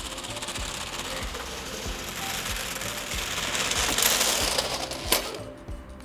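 Two DJI RoboMaster S1 robots' wheels and drive motors clattering over paving stones as they race toward the camera. The sound grows louder to about four seconds in, with a sharp click about a second later, and then falls away as they pass.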